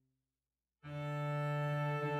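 Solo cello music: near silence for almost a second, then a sustained bowed chord comes in suddenly and holds.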